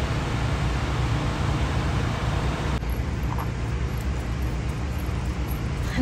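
Steady low rumble of outdoor background noise with no speech, fairly even in level throughout.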